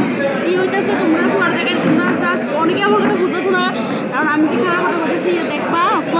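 Close-up woman's voice over the chatter of a crowd talking in a large hall.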